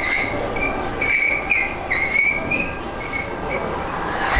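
A high-pitched squeal in several drawn-out stretches that waver and bend in pitch, over a noisy rumble.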